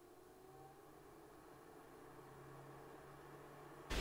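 Near silence with a faint, steady low hum from a Greenote AP10 HEPA air purifier's fan running on its highest setting.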